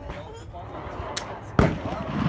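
A single .22 rifle shot, sharp and loud, about one and a half seconds in, with a short echo after it.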